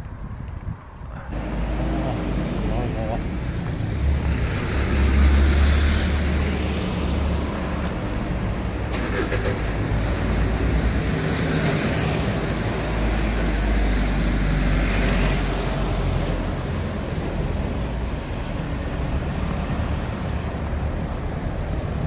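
Urban road traffic with a city bus's engine running close by: a loud, steady low rumble that swells twice. The noise steps up sharply about a second in.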